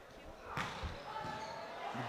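A volleyball player's loud grunt as he jump-serves, together with the hard smack of his hand striking the ball about half a second in.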